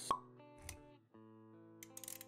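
Intro music of steady sustained notes, opened by a single short pop sound effect just after the start, with a soft low thud a little later and a brief dip in the music about a second in.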